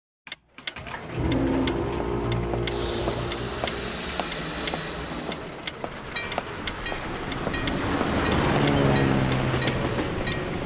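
Music and sound effects for an animated title sequence. A low droning rumble and held tones swell in, a high sound glides downward from about three seconds in, and there is a run of sharp ticking clicks.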